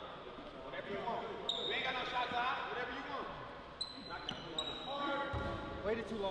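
Basketball being dribbled on a hardwood gym floor, with a few short high sneaker squeaks and voices in the gym.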